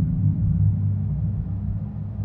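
Low, dark background drone of soundtrack music, held steady and slowly fading.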